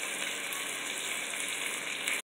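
Steady sizzling hiss of whole Indian olives cooking in oil with sugar in a non-stick kadai, stirred with a spatula.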